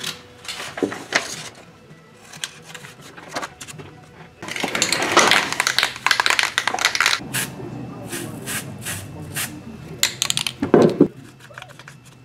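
Scissors snipping paper, then a small plastic bottle shaken hard for about three seconds, followed by light handling clicks at a workbench.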